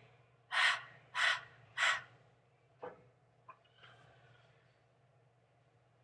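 A woman panting out three short, breathy "h" sounds about half a second apart: the /h/ letter sound, voiced as if out of breath from running. These are followed by two faint taps and a soft, brief scratching.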